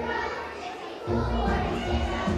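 Massed children's voices over a musical accompaniment with a low bass line; the bass drops out and comes back in about a second in.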